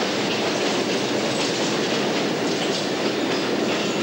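London Underground train running along the platform with a steady rumble and wheel noise on the rails.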